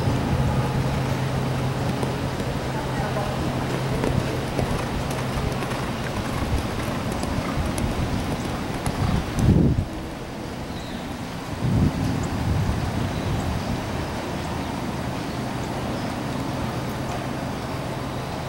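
Steady open-air background noise with a low hum over the first few seconds and faint voices. A little past the middle come two short low thumps about two seconds apart.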